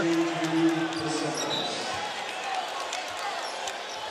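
Arena crowd noise over a basketball being dribbled on a hardwood court, with a held voice in the first second or so.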